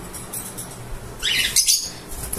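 Caged pet birds chirping in an aviary, with a quick burst of shrill, high chirps starting a little over a second in.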